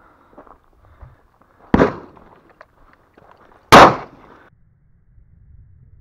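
Two shotgun shots about two seconds apart, the second louder, each trailing off in a short echo.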